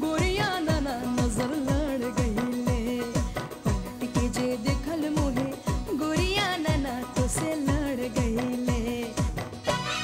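Indian song: a woman singing a wavering melody over a steady drum beat of about three strokes a second. The drums stop just before the end.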